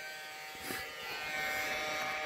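Steady electric buzz of a small battery motor, the handheld insect vacuum used to suck up the ants, with a faint brief knock about a third of the way in.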